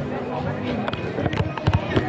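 Street sound of people talking with music playing, cut by four sharp knocks or bangs in the second second.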